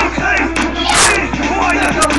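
Several children shouting and yelling at once, their voices overlapping into a loud, unbroken din.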